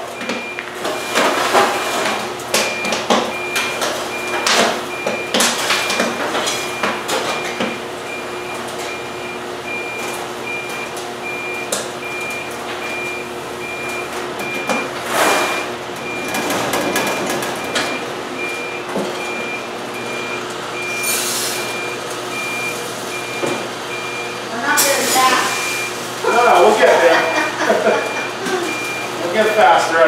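Large commercial kettle popcorn popper's load/dump alarm sounding a high, evenly repeated beep over the machine's steady hum: the signal that the batch has finished and the kettle is ready to be dumped. About halfway through there is a rush of popcorn pouring out of the tipped kettle.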